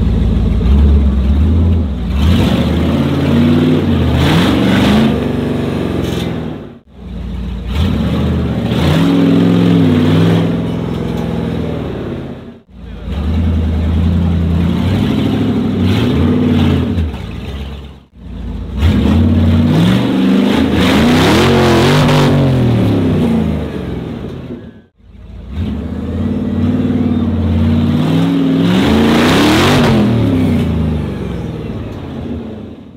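Engines of modified off-road 4x4s revving hard and unevenly under load as they claw up out of a deep dirt trench, with the tyres spinning in the mud. The sound breaks off sharply four times, every five to seven seconds.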